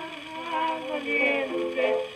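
Acoustic Victrola gramophone playing an old 78 rpm record of a sung tango, heard from the machine in the room. The music carries on between the singers' lines: a held note fades out early, then new notes follow.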